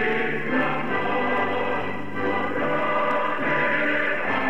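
Choral music: a choir singing an anthem, with sustained held notes.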